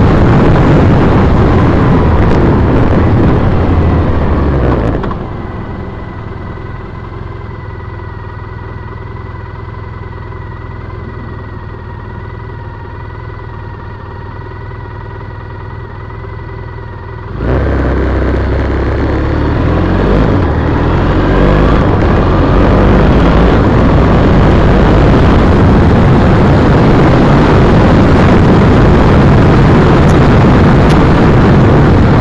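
2010 Triumph Bonneville T100's air-cooled parallel-twin engine with heavy wind noise on the bike-mounted microphone: the bike slows about four seconds in and idles steadily at a traffic light for about twelve seconds, then pulls away hard, the engine and wind noise rising again as it gathers speed.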